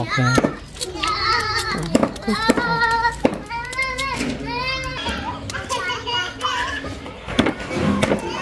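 High-pitched children's voices chattering and calling, with short clicks of a knife cutting slices off a peeled bamboo shoot.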